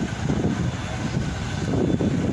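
Low, uneven rumble of outdoor city ambience, with no clear single event.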